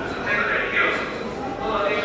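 Indistinct voices, high-pitched and without clear words, coming and going in short bursts.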